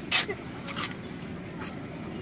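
Steady hum of a bus's engine and air conditioning inside the passenger cabin, with a short sharp hiss just after the start and two softer ones later, over faint passenger voices.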